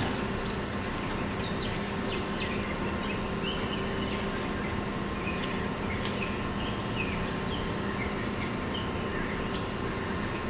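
Steady room hum with fixed tones, like a ventilation system, and faint short high chirps and a few light clicks scattered through it.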